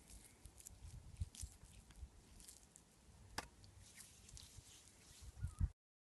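Faint rustling and scattered small clicks of close handling, with a low rumble on the microphone and one sharper click a little past halfway. The sound cuts off abruptly near the end.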